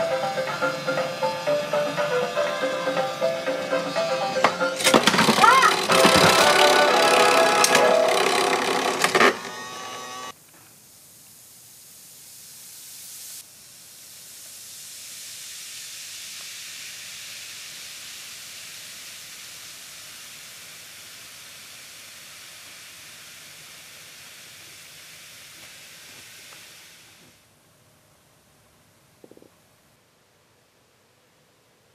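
Background music for the first ten seconds or so. Then a Bikkura Tamago bath ball fizzes in a mug of water: a steady hiss that swells, slowly fades and stops a few seconds before the end.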